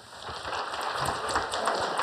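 Audience applauding, the clapping swelling over the first half second and then holding steady.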